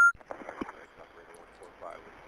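Start of a recorded 911 emergency call playing back: a short sharp beep, then steady phone-line hiss with faint, indistinct voices underneath.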